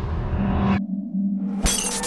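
Horror-trailer score: a dense low drone that cuts off abruptly just before a second in, leaving a single steady hum, then a sudden glass-shattering crash near the end.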